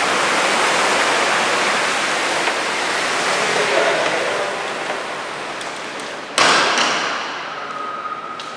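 Water from a wall fountain falling into a pool, a steady rush that fades away, then a single sharp knock with a short echo about six and a half seconds in.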